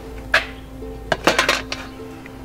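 Galvanized metal bucket clanking as it is set down on a tiled ledge, its wire handle clinking: one sharp clank about a third of a second in, then a quick cluster of clinks a second in. Background music plays underneath.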